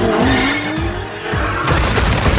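Film soundtrack of a sports car revving hard with a rising engine pitch and tyre noise, under score music. About 1.7 seconds in comes a sudden crashing and smashing as the car ploughs through ceramic statues.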